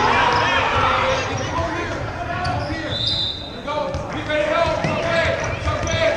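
Basketball bouncing on a hardwood gym floor during a children's game, with overlapping voices of players and spectators calling out.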